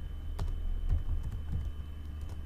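Typing on a computer keyboard: several separate keystroke clicks, over a steady low hum.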